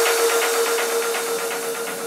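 Electronic background music in a sparse passage: one held synth tone with a faint, quick, even pulse, easing down in level.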